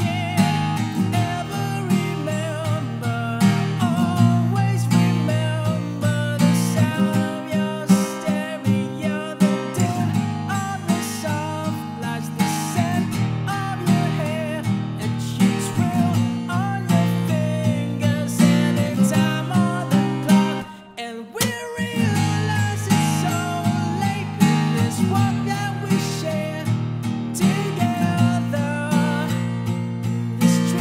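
A Taylor steel-string acoustic guitar strummed in steady, mostly downward strokes through a C#m–Asus2–E–Bsus4 chord progression. The playing drops away briefly about two-thirds of the way through, then picks up again.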